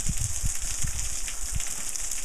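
Spring water falling from a cliff face onto rock as a steady hiss of drops and spray, with a few dull low thumps.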